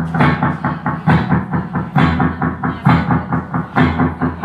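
Live rock band playing: drums keep a fast, steady beat with a heavier hit about once a second, under sustained bass and electric guitar.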